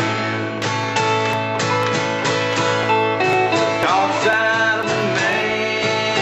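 An acoustic guitar and an electric guitar playing a country song together, the acoustic strumming while the electric plays a lead line with sliding notes.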